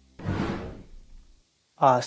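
A short whoosh that starts just after the talking stops and fades out over about a second, followed by a moment of dead silence.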